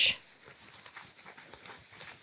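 Faint rustling of a paper towel being rubbed over gold leaf, burnishing it onto tacky acrylic gel.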